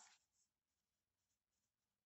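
Near silence: the end of a spoken word fades out at the very start, then nothing but a dead-quiet room.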